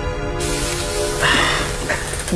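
A sustained music chord gives way about half a second in to a loud, steady hiss of gas escaping inside a damaged, smoke-filled vehicle cockpit, with a brief brighter hiss about a second later.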